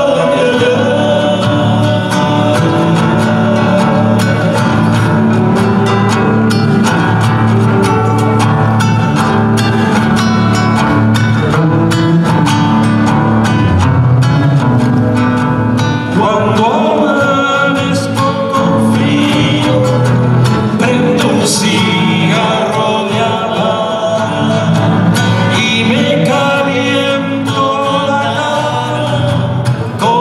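Live Andean folk ensemble music: male voices singing over strummed acoustic guitars and hand percussion in a steady rhythm.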